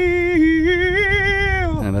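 A man singing one long held note, steady with a slight waver, that slides down in pitch near the end.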